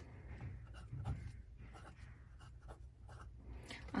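Fine fountain-pen nib scratching faintly across paper in short, irregular strokes as letters are written.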